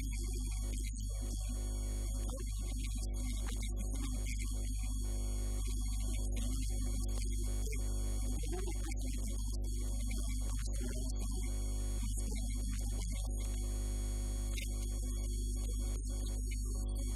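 Loud, steady electrical mains hum on the recording, a low buzz with a stack of overtones that stays unchanged throughout.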